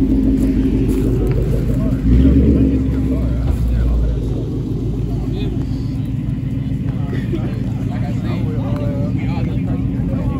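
Car engine running steadily close by. About two seconds in it swells louder and deeper for roughly two seconds, then settles back.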